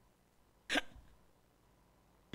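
A man's single short breathy chuckle, about two-thirds of a second in.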